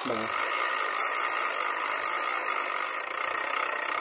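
BeanBoozled plastic spinner wheel spinning, giving a steady rattling whir that carries on without a break until the wheel settles on a flavour.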